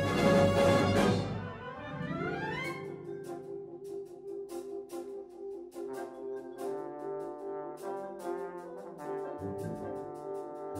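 Military concert band playing loudly, breaking off about a second in, followed by a rising glide. Then a quieter accompaniment of evenly repeated notes with light ticking percussion, over which a solo trombone melody enters about six seconds in.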